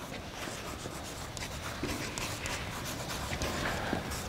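Chalk writing on a blackboard: faint, irregular scratching and tapping strokes as the words are written.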